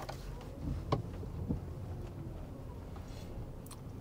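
Low, steady car-cabin rumble with a few faint clicks and taps.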